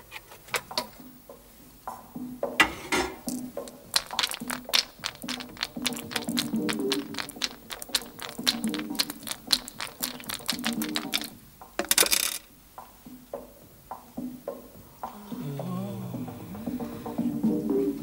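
Dice shaken in a cup: a fast run of small clicks for several seconds, then a single louder clatter about twelve seconds in.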